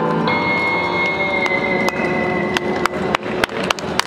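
An electric guitar chord rings out, sustained and slowly fading, with the last notes of the piece. Hand claps start about halfway through and quicken to around three a second.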